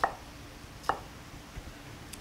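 Chef's knife cutting down through an onion half onto a wooden cutting board: two sharp knocks about a second apart, followed by a few faint ticks.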